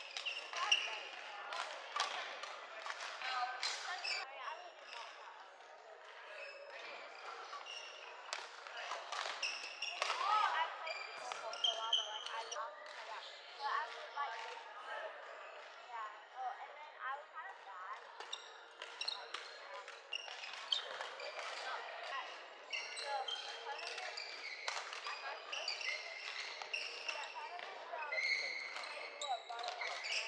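Badminton rally sounds on a wooden indoor court: sharp racket hits on the shuttlecock and players' shoes squeaking and stepping, repeated irregularly throughout, in a reverberant hall. Background chatter from the hall runs underneath.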